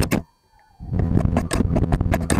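Rapid run of sharp scissor snips and clicks close to the microphone. It breaks off briefly near the start, then resumes as a dense stream about a second in.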